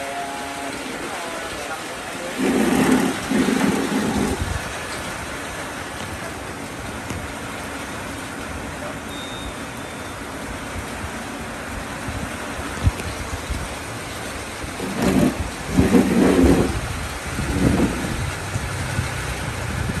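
Steady outdoor street and traffic background noise, with a few short bursts of nearby voices about three seconds in and again near the end.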